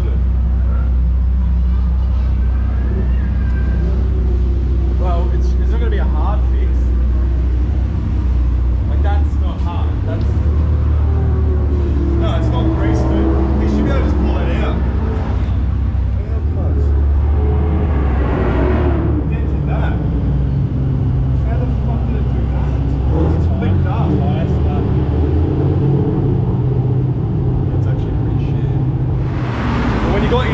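A car engine idling, a steady low drone whose pitch shifts slightly a few times, with people talking over it.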